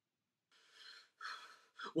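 A man's faint intake of breath before speaking, drawn in two short airy pulls about halfway in, after a moment of dead silence.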